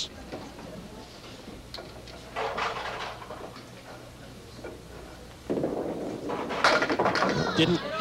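A candlepin bowling ball rolls down the wooden lane from about five and a half seconds in, then pins clatter as it strikes them about a second later. It misses the head pin, leaving four pins in a row plus the ten pin standing.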